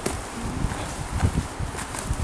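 Footsteps of people walking on an earth footpath, soft thuds about three a second.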